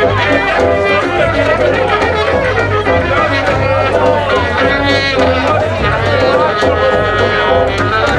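Balkan brass band playing live, a trumpet carrying the melody over a steady low bass pulse, with audience voices mixed in.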